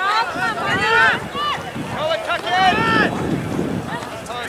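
Several high-pitched voices shouting and calling out in short, rising-and-falling cries, overlapping in two clusters, with wind rumbling on the microphone.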